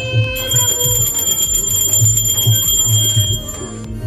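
Brass puja hand bell (ghanti) rung continuously from about half a second in until near the end, its high ringing tones held steady over background music with a steady beat.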